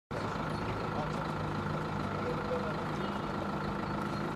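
A motor vehicle engine idling steadily, with faint voices of men talking over it.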